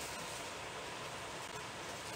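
Steady, faint hiss of room noise with no distinct events.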